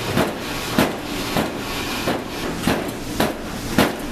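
Metal loaf pan knocked against a towel-covered block, six sharp knocks spaced about half a second apart with a short pause in the middle, over a steady background hiss.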